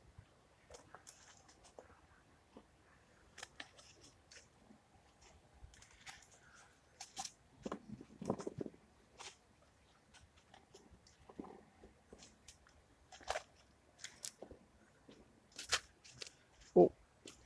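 Gloved hands spreading and pressing compost into a plastic seed-module tray: faint, scattered crunching and rustling, busiest about halfway through.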